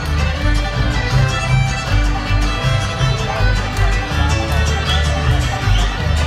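Live bluegrass band playing an instrumental passage: fiddle, mandolin, banjo, acoustic guitar and upright bass, the bass stepping through low notes under a steady strummed beat.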